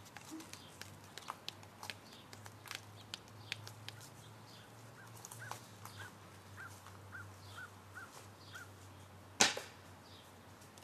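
Quiet yard sounds with faint scattered ticks and clicks. A bird calls a run of about eight short chirps in the middle, and one sharp, loud knock comes near the end.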